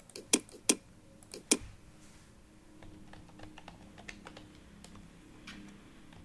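Typing on a computer keyboard: four loud, sharp key clicks in the first second and a half, then a run of lighter, quicker keystrokes.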